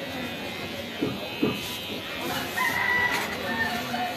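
A rooster crowing in the background: a long held call that starts about two seconds in and lasts about a second. It comes after two short sharp sounds, just after one second in.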